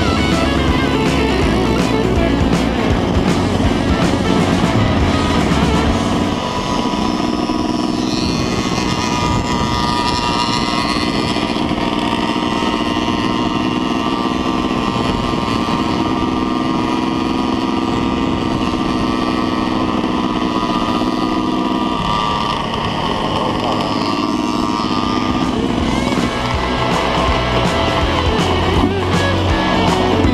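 Motorcycle engine running while riding, holding a steady pitch through the middle stretch, mixed with rock music.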